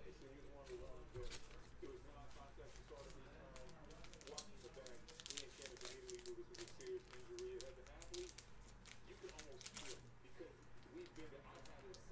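Foil trading-card pack wrapper being torn open and crinkled: quiet scattered crackles, thickest about five seconds in and again near ten seconds.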